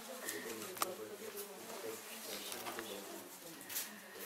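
A dove cooing in low, wavering notes, with a few small clicks and rustles of objects being handled close by.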